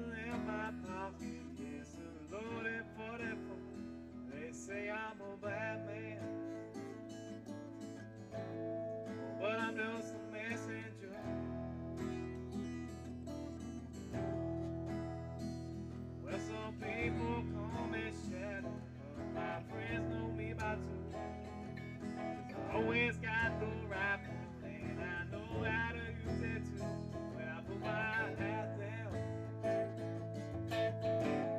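Guitar music from a jam session, played without words: plucked and strummed notes over low notes that change every few seconds.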